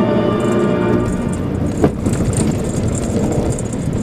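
Background music for the first couple of seconds, cut off abruptly with a short blip, after which the Mitsubishi Pajero Mini's engine and tyre noise on the snowy dirt road are heard from inside the cabin.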